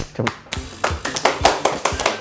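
Two people clapping their hands in a quick run of claps that starts about half a second in, over background music.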